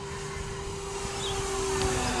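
Electric RC Rare Bear warbird flying past, its E-flite 110 brushless motor turning a three-blade 16x10 propeller: a steady propeller drone that grows louder toward the end.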